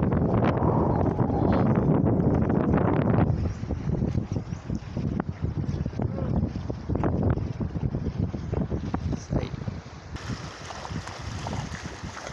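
Wind buffeting the microphone for the first three seconds or so, then water splashing and sloshing around a small rowboat moving through shallow water, with scattered short splashes.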